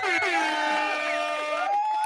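A sustained horn-like sound: several steady tones held together for about two seconds, bending slightly and rising in pitch near the end.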